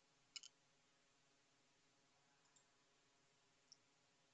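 Near silence with a few faint clicks: a quick double click about half a second in, then two fainter single clicks later.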